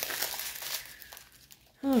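Small plastic bags of diamond-painting drills crinkling as they are handled, dying away a little over a second in; a woman starts speaking near the end.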